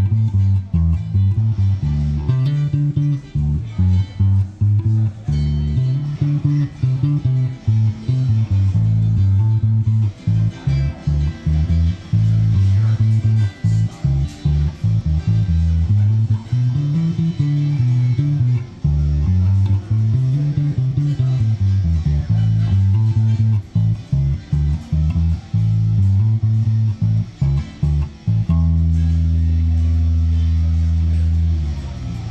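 Squier Classic Vibe '70s Jazz Bass played fingerstyle through a bass amp: a busy, continuous line of bass notes, ending on one note held for the last second and a half or so.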